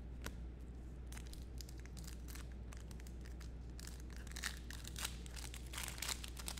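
Plastic trading-card pack wrapper being torn open and crinkled by hand, the crackling getting busier in the last two seconds, over a steady low electrical hum.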